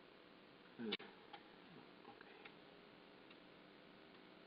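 Near silence in a small room, broken about a second in by a short low thump and a sharp click, then a few faint clicks: computer mouse clicks while paging through presentation slides.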